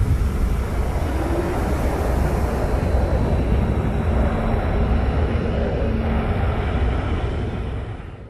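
A steady, dense low rumbling noise, a sound effect in the music video's outro, that fades out near the end.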